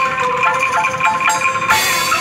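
Street angklung ensemble playing: a quick melody of mallet strikes on a wooden-keyed xylophone over shaken bamboo angklung, with a cymbal hit near the end.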